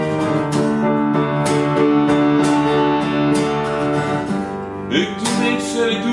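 Acoustic guitar strummed in a regular rhythm over sustained keyboard chords: an instrumental passage of a two-man home performance.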